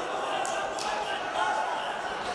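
Arena crowd noise: many voices calling and chattering, with two sharp knocks about half a second and just under a second in.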